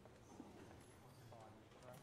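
Near silence: faint room tone with a few soft clicks and faint murmured voices.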